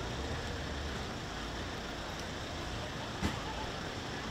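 Steady outdoor background noise with a low rumble and faint distant voices. There is one brief knock about three seconds in.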